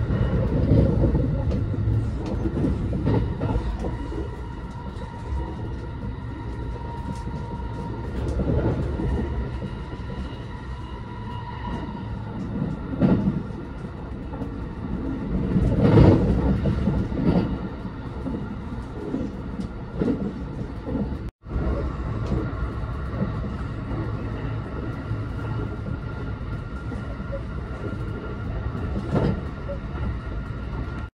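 Running noise of a JR West 289 series electric limited express, heard from inside the passenger car: a steady rumble of wheels on rail. It swells louder about halfway through, with a brief dropout a little later.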